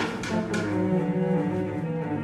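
Instrumental ensemble playing low, sustained notes, with no singing.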